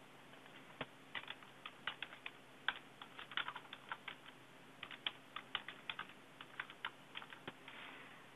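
Computer keyboard typing: two quick runs of keystrokes with a short pause between them, a password typed and then typed again to confirm it.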